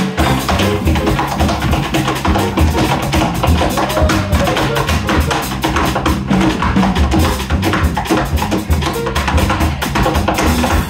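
Tap shoes striking a wooden tap board in fast, dense rhythms over a jazz rhythm section with piano, bass and drums, with the horns not playing.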